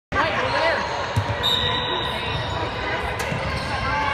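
A basketball bouncing on a hardwood gym floor, a few dull thumps, amid voices in a large echoing gym. A short high-pitched tone sounds about a second and a half in.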